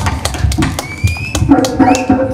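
Hand drum struck in quick, uneven strokes, with a short pitched sound near the end.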